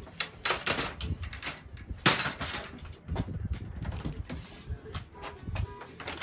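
Irregular knocks, scrapes and rustles of handling, the loudest burst about two seconds in.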